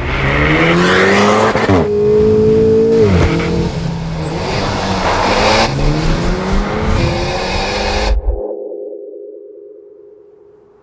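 Alpine A110's 1.8-litre turbocharged four-cylinder engine pulling hard, its pitch climbing and then dropping again and again as it accelerates and shifts gear. The engine sound cuts off suddenly about eight seconds in, leaving a faint steady tone that fades away.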